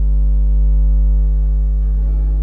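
Loud, steady electrical mains hum with a stack of evenly spaced overtones, unchanging throughout.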